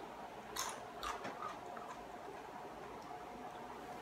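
A few faint mouth clicks from a man chewing a piece of rocoto pepper, about half a second and a second in, over quiet room tone with a faint steady hum.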